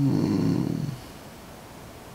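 A man's short, low 'hmm' sound lasting about a second, then faint room tone.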